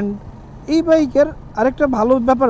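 A man talking in short phrases, with the steady low noise of a motorcycle ride underneath, heard plainly in the pause about half a second in.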